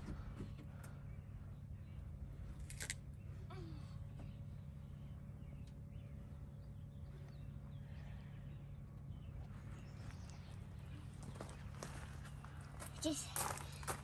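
Faint clicks and knocks from a spare-tire winch being cranked by hand with a long rod through the cargo floor, over a steady low hum.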